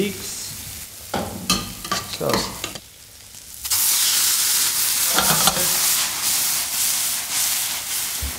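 Boiled leeks going into a hot stainless frying pan with browned pancetta: a few clattering knocks, then a loud sizzle sets in suddenly about halfway through and keeps on as they are stirred.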